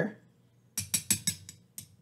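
A quick run of about six light, sharp clicks within under a second, then one more: metal cocktail tongs tapping against a cherry jar and glass while cherries are picked onto a cocktail skewer.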